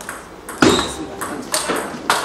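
Table tennis ball struck by paddles and bouncing on the table in a serve and rally: a quick series of sharp clicks, the loudest a little over half a second in.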